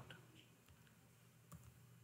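Near silence: room tone, with a few faint computer-keyboard keystrokes in the second half.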